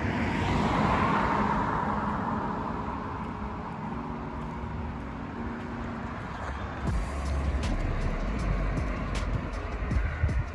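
Street traffic noise from a vehicle passing on the road, swelling about a second in and fading away over the next few seconds. In the second half there is a low rumble and a few light clicks.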